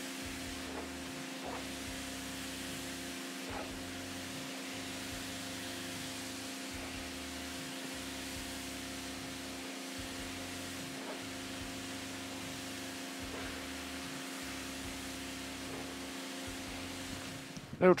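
Electric pressure washer spraying a jet of water into a carpet car mat to flush out cleaner foam: a steady hiss with a steady motor hum underneath, ending at a cut just before the end.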